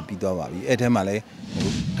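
Speech only: a man talking in short phrases with brief pauses.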